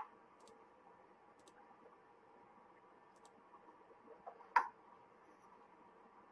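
A few faint, sparse clicks over quiet room tone, with one sharper, louder click about four and a half seconds in.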